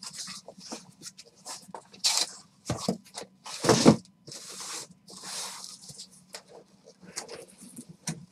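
Cardboard shipping case being opened by hand: a series of scraping and rustling sounds with short knocks as the flaps are pulled back and the case is lifted off the boxes inside, the loudest scrape a little under four seconds in.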